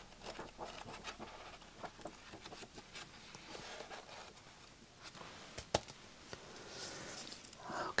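Pages of a book being turned and handled: soft paper rustles and light taps, with one sharper click a little before six seconds in.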